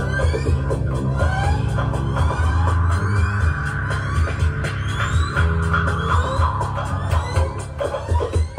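Live improvised electronic music: a pulsing low bass drone under many short, repeated rising sweeps and a steady patter of clicks.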